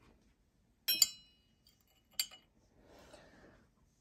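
Glass teaspoon clinking twice against a porcelain saucer as it is set down: one light clink with a brief high ring about a second in, then a softer tap just after two seconds.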